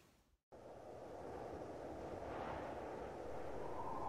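A moment of dead silence, then a faint, low rumbling noise that swells gradually: the atmospheric opening of a music video's soundtrack, before the music proper comes in.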